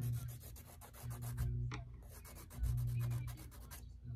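Press-on nails being buffed on a coarse emery-board nail file: the nail is rubbed along the file in quick scratchy strokes, several a second, in two runs with a short pause between.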